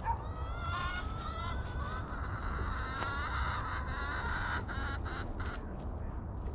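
Birds calling: a chorus of repeated, overlapping calls, strongest in the first two seconds and again from about four to five and a half seconds in.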